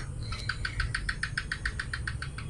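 A quick, even run of light clicks from computer input on a laptop, about nine a second, fading near the end, over a low steady rumble.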